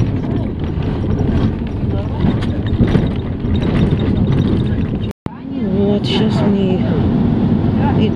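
Bus engine and road noise heard from inside the moving bus, a steady low rumble with indistinct voices over it. The sound cuts out completely for a moment about five seconds in, then resumes.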